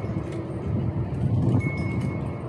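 Gusty wind on the microphone, a steady low rumble, with a wind chime ringing faintly near the end.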